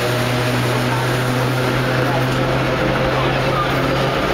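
Vintage New York City subway car in motion: a loud, even running noise with a steady low hum under it.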